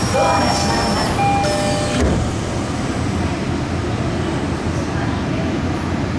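Tokyo Metro 18000 series electric train braking into a station. A faint high inverter whine falls in pitch under steady tones over the car's low running rumble. About two seconds in a single clunk cuts the tones off as the train comes to a stop, leaving a steady low hum.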